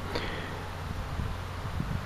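Light wind on the microphone: a steady, even hiss and low rumble with no distinct event.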